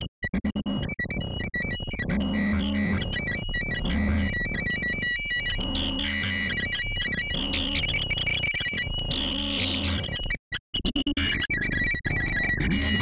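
Electronic noise music from a Ciat-Lonbarde Plumbutter synthesizer, sampled and processed in Max/MSP and blended with one-shot beats: high steady tones over a low beat that repeats about once every second and a quarter. The sound stutters with brief dropouts in the first second or so and cuts out briefly near the end.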